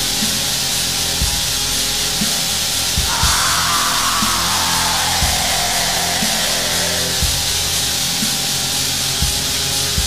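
Depressive atmospheric black metal: a dense, distorted wall of sound with low beats about once a second. A high melodic line slides slowly downward from about three seconds in.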